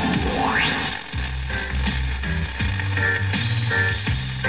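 Music from Ràdio Berga's FM broadcast on 107.6 MHz, received over tropospheric DX and played through a radio receiver, with a background of static hiss from the weak long-distance signal. A rising sweep runs through the first second.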